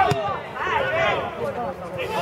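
Indistinct men's voices shouting and calling across an outdoor football pitch, with a single sharp knock just after the start.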